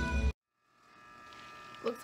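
Background music with sustained organ-like chords cuts off abruptly, followed by a moment of silence and then a faint, steady low hum of room tone. A woman starts speaking near the end.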